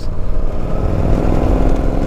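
Yamaha V-Star 950's air-cooled V-twin engine running steadily while the motorcycle is ridden, with wind rumbling on the microphone.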